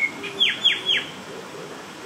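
A bird's three quick, high chirps about half a second in, each sliding steeply down in pitch, after a short rising note at the start.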